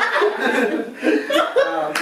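Several people laughing together, mixed with scraps of speech.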